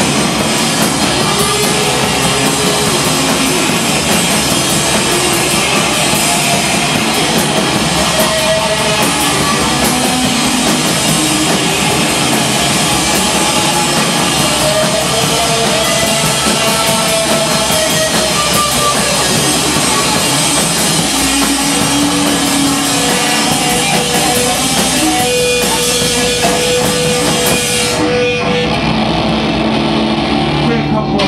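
A rock band playing live and loud: electric guitars over a full drum kit. Near the end the high end of the sound drops away as the song comes to a close.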